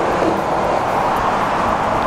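Road traffic: a steady rush of tyre and engine noise from vehicles passing on the road.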